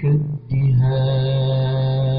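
Quran recitation in tajweed style: a single voice chanting a long, steadily held melodic note, after a short phrase and a brief break at the start.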